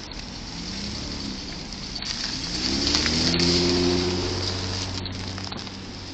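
A car driving past on a wet, slushy street. Its tyre hiss and engine grow louder to a peak about three and a half seconds in, then fade away.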